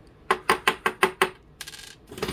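About six quick metallic clicks, roughly five a second, from the aluminium rudder bracket and its hinge pin being worked out by hand, followed near the end by a short buzzing rattle.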